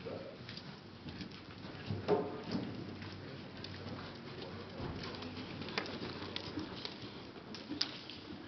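Horse cantering on the sand footing of an indoor riding arena, a run of soft hoofbeats with scattered sharper knocks. A brief pitched sound about two seconds in, the loudest moment, stands out.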